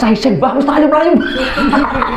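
A man laughing heartily into a microphone, a run of high-pitched bursts that rise and fall.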